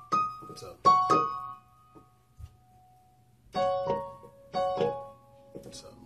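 Yamaha Portable Grand digital keyboard playing single piano-voice notes, F-sharp and C-sharp, picked out one after another. Two or three notes sound in the first second, then after a pause of about two seconds another group of notes follows.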